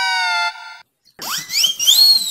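Added comedy sound effects: a held electronic tone that cuts off about half a second in, a brief silence, then a noisy whoosh with a whistling tone that glides upward to the end.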